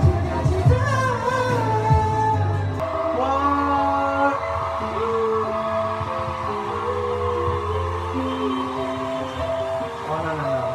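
Karaoke: a man sings into a microphone over a pop backing track played through the room's speakers. About three seconds in the voice and the heavy beat drop out, leaving the track's held keyboard notes stepping from one pitch to the next.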